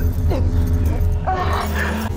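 A woman's choked, strained whimpering cries while she is being strangled: a short falling one near the start and a longer, higher one past the middle. A low steady music drone runs underneath.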